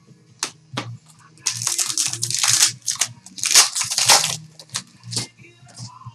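Wrapper of a trading-card pack being torn open and crinkled by hand: two long crackling, rustling stretches about a second and a half and three and a half seconds in, with a few sharp clicks of card and wrapper handling around them.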